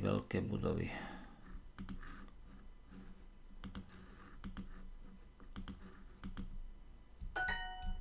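Computer mouse clicks, several of them in quick pairs, spaced about a second apart as word tiles are selected, then near the end a short bright app chime made of a few steady tones, typical of a language app's correct-answer sound.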